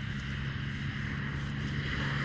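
Steady low engine drone with a light hiss above it.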